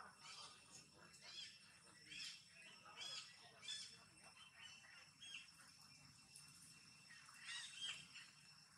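Birds chirping faintly, short high calls repeating every second or so, over a faint steady high tone.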